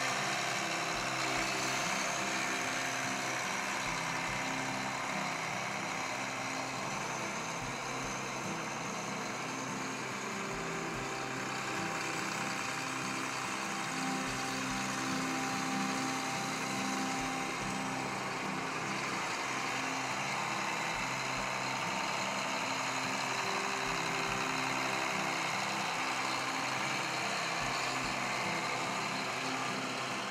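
Diesel engine of a Caterpillar Challenger 75C rubber-tracked tractor running steadily as the tractor drives slowly by, with soft background music underneath.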